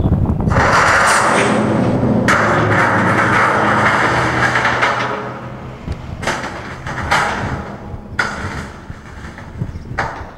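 A large steel LPG tank launched by a special-effects rig. A sudden blast is followed by about five seconds of loud rushing, scraping noise as the tank travels and skids over pavement. Then come a few shorter scrapes and knocks as it rolls.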